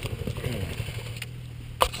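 Motorcycle engine idling with an even, pulsing beat that settles into a steadier low hum about a second in; a single sharp click sounds near the end.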